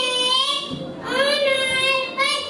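A young boy singing into a stage microphone, holding long steady notes in two phrases with a short break about a second in.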